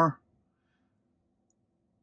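The end of a spoken word, then near silence inside the car's cabin with only a faint low hum; no parking proximity chime sounds.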